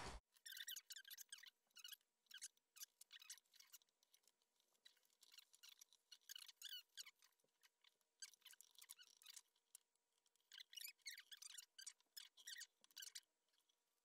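Faint rustling and crackling of patterned paper being wrapped around a tin can and handled, a scatter of small crinkles with a couple of short lulls, at near-silent level.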